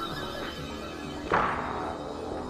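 Techno track playing from vinyl in a DJ mix: steady sustained synth tones, with a loud, sharp, noisy hit a little past halfway that is part of a pattern repeating about every two seconds.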